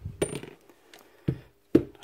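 Metal power-tool parts knocked and set down by hand on a concrete floor: three sharp clinks, the loudest near the end.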